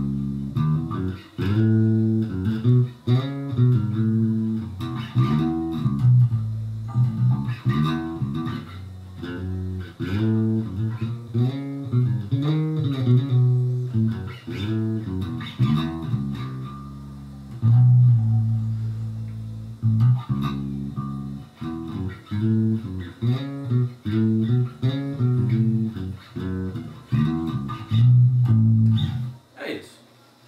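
Four-string electric bass played fingerstyle: a line of notes through a pentatonic scale, sliding chromatically between scale notes so that the pitch glides up and down, with one long held note about two-thirds of the way through. The playing stops just before the end.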